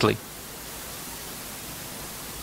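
Steady, even hiss of the recording's background noise, with no other sound in it.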